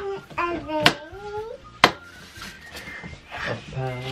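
Sharp plastic clicks, three about a second apart, as the panels of a foldable plastic storage box are handled and snapped into place. A young child makes wordless, gliding vocal sounds over the first clicks.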